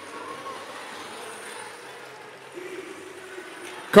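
Steady background din of a robotics competition arena during a match: crowd hubbub mixed with the whine of robots' electric drivetrains, with faint hums drifting in and out.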